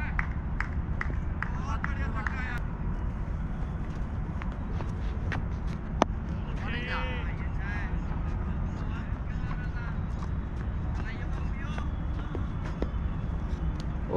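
Faint shouted voices of players across an open cricket ground over a steady low rumble of wind on a wearable camera's microphone, with a single sharp knock about six seconds in.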